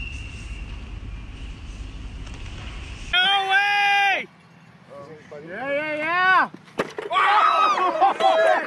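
A low steady rumble, then from about three seconds in, spectators at a bicycle race shouting: one long held yell, then a rising-and-falling yell. A sharp knock just before seven seconds is followed by several voices shouting and cheering at once.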